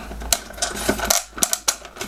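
Hard plastic parts of a toy TARDIS clicking and knocking as its top plate is worked loose and slid off the body, several sharp clicks with a quick cluster near the end.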